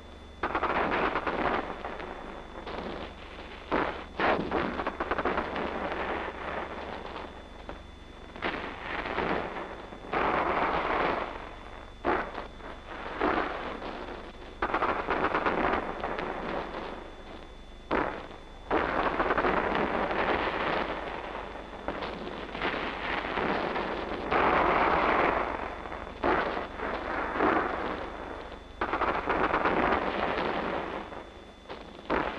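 Battle noise of gunfire and explosions. Sudden sharp reports come every one to four seconds, each dying away in a burst of noise, over a steady low hum.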